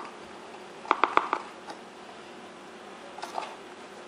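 Light clicks and taps from utensils and an ingredient box being handled while baking powder and baking soda are added to a stainless steel mixing bowl: a quick run of about four clicks about a second in, and a couple of fainter ones near the end.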